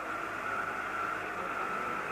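Steady background noise of location sound, with a constant high-pitched hum running through it.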